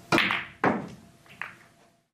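A pool shot: the cue tip strikes the cue ball, and about half a second later the cue ball cracks into a cluster of pool balls and breaks it apart. A softer ball click follows near the end.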